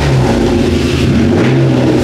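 A car engine running at idle, its low note lifting slightly twice.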